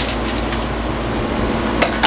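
Steady rush of a camper's built-in 13,500 BTU rooftop air conditioner running, with a sharp knock at the start and another near the end.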